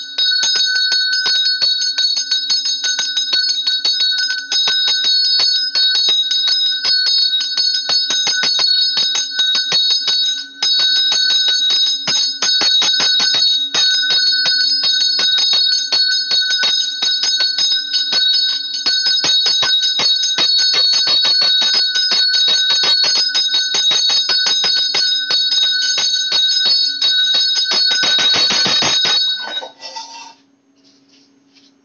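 Temple bell rung rapidly and without a break during the lamp-waving (aarti), its strikes coming several times a second over a faint low steady hum. The ringing stops just before the end.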